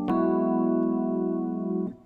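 Piano playing an E add9 chord voiced over an F# bass (F#, G#, B, E, F#). It is struck once, held for nearly two seconds, then released near the end.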